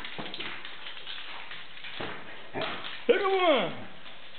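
Small dog jumping at a balloon on a wooden parquet floor: faint light taps and scuffs. A loud high-pitched call rises and falls a little after three seconds in.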